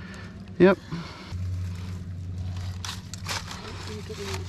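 Steady low rumble of moving creek water heard through a camera held under the water, starting about a second in, with a couple of sharp knocks near three seconds.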